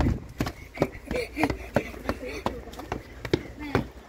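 Footsteps climbing steep outdoor steps, a steady tread of about three footfalls a second.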